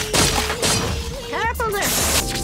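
Cartoon sound effects of magic ice bolts striking and shattering, several sharp crashes in the first second, followed by a brief rising-and-falling cry about a second and a half in.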